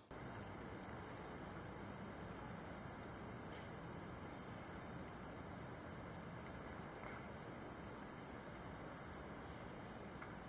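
A cricket's high-pitched trill, a steady run of fast, evenly spaced pulses with no pauses.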